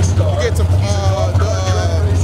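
A man talking, over a steady low rumble that does not change.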